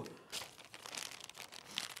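Clear plastic bag crinkling faintly as it is handled, in a few scattered rustles.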